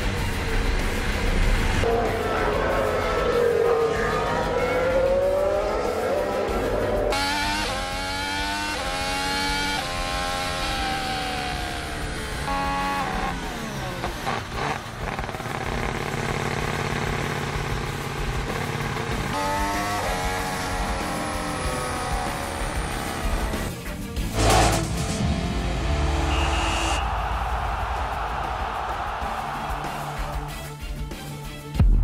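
Formula 1 car's turbocharged V6 heard from onboard, revving up and dropping back again and again through the gear changes, with music underneath. A single sharp bang comes late on.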